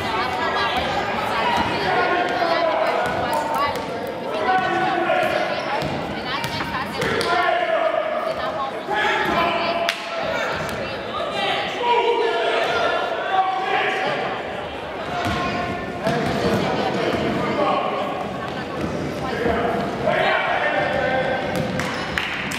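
Voices of players and spectators calling and chattering through a youth basketball game in a gym, with a basketball bouncing on the hardwood floor now and then.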